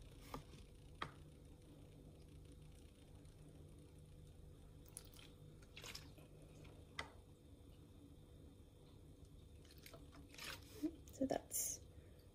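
Faint clicks and taps of small paint containers and a brush being handled while thinner is added to the paint, over a low hum that stops about halfway. A cluster of louder taps comes near the end.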